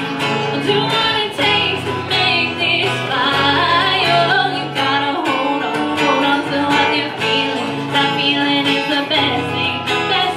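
Live acoustic pop performance: a man and a woman singing together into microphones, backed by two strummed guitars.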